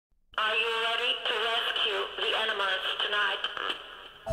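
A voice speaking in a thin, narrow, radio-like tone with no music under it, opening the song. It starts just after the beginning and fades out shortly before the end.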